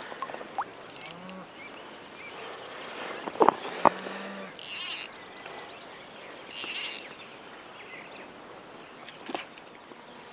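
Quiet outdoor ambience on a lake, broken by two sharp knocks close together and then two short hissing swishes about two seconds apart.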